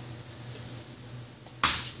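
A low steady hum, then a single short, sharp noise about one and a half seconds in that fades quickly.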